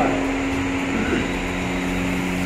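A steady mechanical hum with two low held tones over a faint even hiss.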